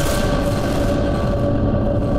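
News channel logo sting: a sudden hit, then a loud, dense rumble with a few steady tones held over it.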